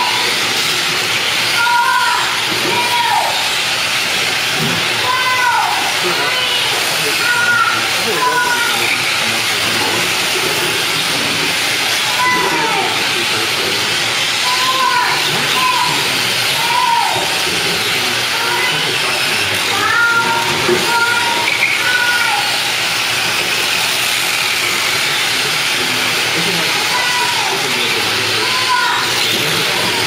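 Several small electric RC cars (Tamiya M-03 mini chassis) running together on a carpet track, with a steady high hiss of motors and gears. Over it, whines sweep down in pitch again and again as the cars slow for corners.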